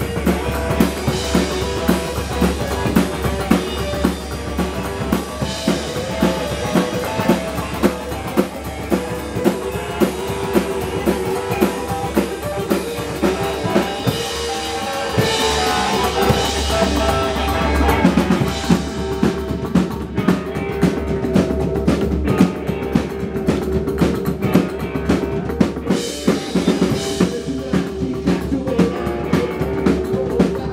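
Psychobilly band playing live with electric guitar, upright double bass and drum kit: an instrumental stretch with no singing, the drums keeping a steady beat of snare and bass-drum hits.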